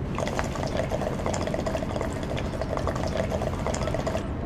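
Water bubbling fast and steadily in a coffee-mug water pipe as shisha smoke is drawn through it, starting just after the start and cutting off sharply at the end when the draw stops.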